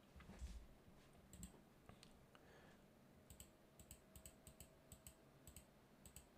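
Faint, short clicks of computer input at a desk, a scattered run of them in the second half, over near-silent room tone.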